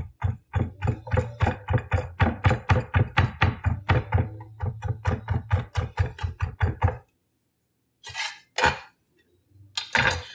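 Knife chopping fresh parsley on a cutting board: a steady run of quick knocks, about five a second, that stops about seven seconds in. Two short sounds follow near the end.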